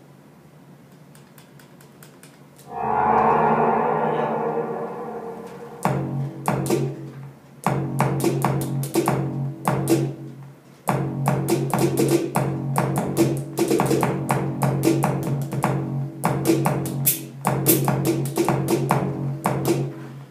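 Electronic drum machine sounds in an 808 style, triggered by finger taps on a glove MIDI controller and played through a speaker: a held synth chord about three seconds in that fades away, then from about six seconds on a fast, uneven run of drum hits over a steady low note.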